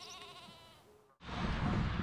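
A single wavering bleat from a farm animal in the first second. After a sudden cut, a steady rush of outdoor noise sets in.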